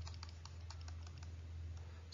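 Faint, irregular light clicks and taps of a stylus writing on a tablet, several a second, over a steady low hum.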